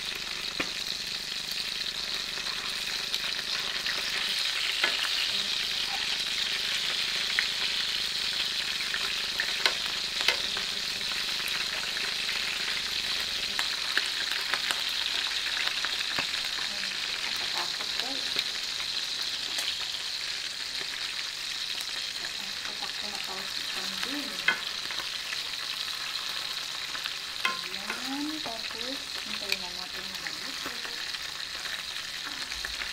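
Whole fish frying in oil in a pan, a steady sizzle, with occasional clicks of tongs against the pan and fish as they are turned.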